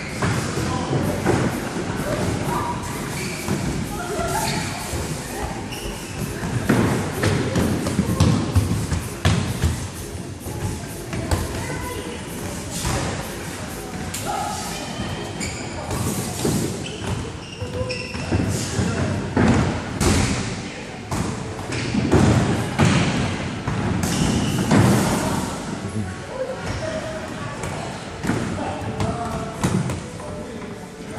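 Repeated dull thumps of inflatable bubble-soccer suits bumping into each other and the floor, and of the ball being kicked, mixed with players' shouts and chatter in a large echoing sports hall.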